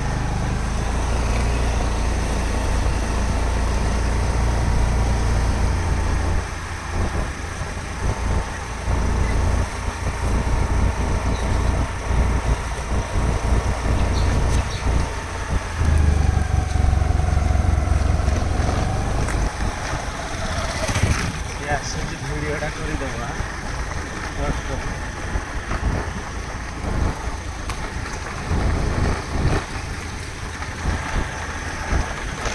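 Wind rumbling on the microphone over the steady hum of a small engine, heard from a moving motorbike. The low rumble eases about six seconds in and swells again for a few seconds from about sixteen seconds.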